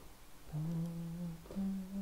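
A man humming two held 'mm' notes: a longer one starting about half a second in, then a shorter one a little higher in pitch near the end.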